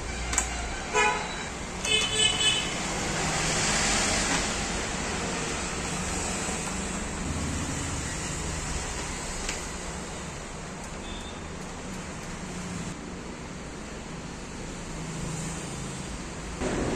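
Steady road-traffic noise with several short car-horn toots in the first few seconds.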